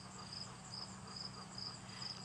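Faint insect chirping outdoors: a short high chirp repeating evenly about two and a half times a second, over a faint steady low hum.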